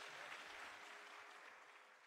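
Faint audience applause at the close of a Carnatic thillana, fading out.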